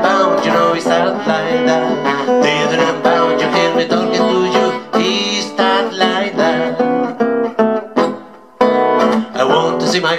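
Acoustic steel-string guitar playing an upbeat hokum blues accompaniment, with a man's voice singing over it. The music breaks off briefly about eight seconds in.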